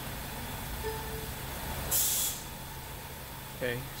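A 2015 Ford Escape's engine idling with a steady low hum, started for the caster sweep. A short, sharp hiss cuts in about two seconds in.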